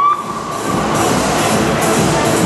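Emergency-vehicle siren whoop: its pitch sweeps up just before and holds a steady high tone that fades out within the first second or so, over the constant din of a parade crowd and street.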